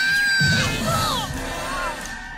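Cartoon boy and Pikachu screaming as they trip and fall: a high held yell and shorter falling cries, with a low thud of them hitting the ground about half a second in, over background music.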